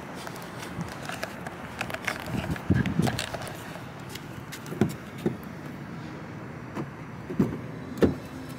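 Steady outdoor background noise with scattered soft knocks and rustles from a hand-held camera being carried while walking.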